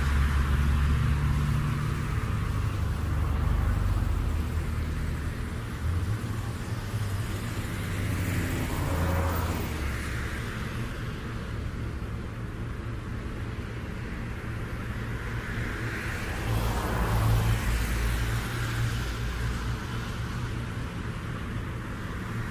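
Low steady rumble with no clear melody or voice, swelling louder twice: once about eight seconds in and again, more strongly, about sixteen seconds in.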